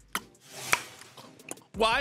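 A few sharp taps, the loudest about three-quarters of a second in, with a soft rushing noise building up just before it.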